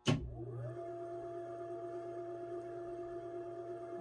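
ILG Model 423 three-phase electric motor, fed from a rotary phase converter, switched on with a sharp click; its whine rises in pitch over the first second as it comes up to speed. It then runs steadily with a constant hum and whine.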